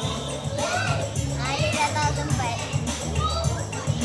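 Young children's voices calling out and chattering over background music.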